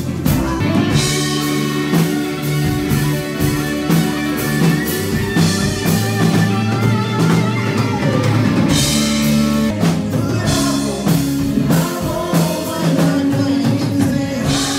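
Rock band playing: electric guitars over a moving bass line and a drum kit with cymbals, loud and unbroken.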